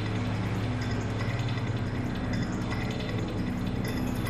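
Container-crane machinery running: a steady low hum with a fast, even mechanical ticking as the spreader lifts a container.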